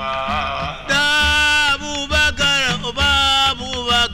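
Hausa praise song: a man sings long, held, bending melodic lines over a regular low drum beat. The voice comes in louder about a second in and pauses briefly between phrases.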